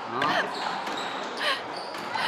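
Squash ball struck by rackets and hitting the court walls and floor in a rally: a few sharp knocks, the clearest about one and a half seconds in.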